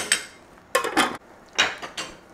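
A metal serving spoon and a stainless, glass-centred lid clinking against a stainless steel pan as the lid goes on: a few sharp metallic clinks, some with a brief ring.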